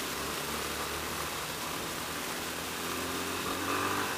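Single-cylinder Yamaha Ténéré 250 motorcycle engine running under steady wind and road noise on the onboard microphone. The engine pitch rises a little near the end as the bike gathers speed.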